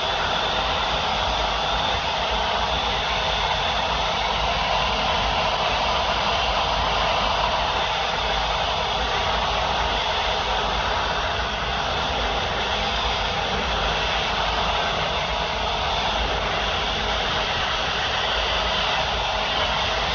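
Two hand-held hair dryers running together, a steady rush of air with a constant motor whine.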